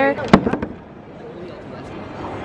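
Camera handling noise: one sharp knock about a third of a second in, then a few lighter clicks, as the camera is touched and moved. After that only the steady hum of a large hall remains.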